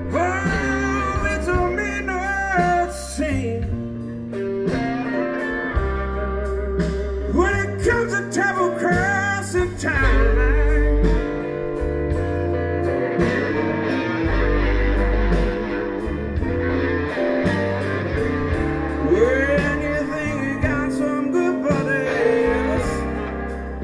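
A live blues band playing a slow blues: an electric guitar lead with bent notes over bass, drums and keyboards.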